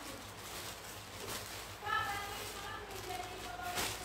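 Faint, distant speech over quiet room noise, with a short spoken phrase about halfway through and another brief one near the end.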